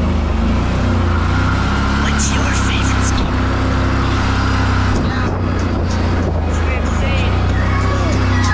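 ATV engine running steadily while riding a dirt trail, mixed with rap music with vocals playing from a handlebar-mounted Bluetooth speaker.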